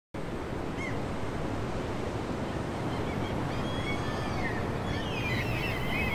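Ocean surf washing steadily onto a beach, with faint bird chirps scattered through it, a few more toward the end.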